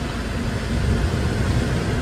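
Steady outdoor background noise, mostly a low rumble with an even hiss above it.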